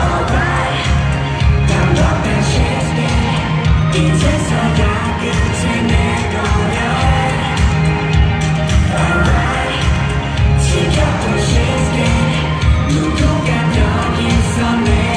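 Live K-pop concert sound through arena loudspeakers: a male singer singing over a loud pop backing track with a heavy, steady bass beat.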